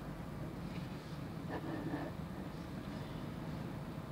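Motorized rotating display turntable running with a steady low hum.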